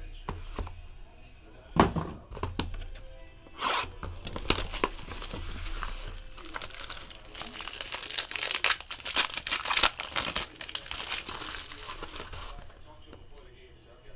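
Plastic shrink-wrap crinkling and tearing as it is pulled off a sealed trading-card box. A sharp knock comes about two seconds in.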